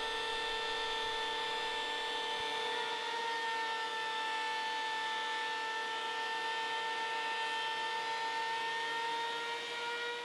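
Benchtop thickness planer running steadily, its motor giving a constant whine over a rushing noise as boards are fed through.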